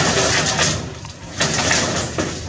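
Baby macaque calling twice, a short call at the start and another near the end.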